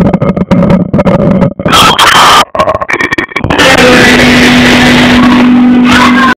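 Loud, distorted gospel music, choppy with many sharp hits, turning into a dense held sound with one steady low note from about three and a half seconds in.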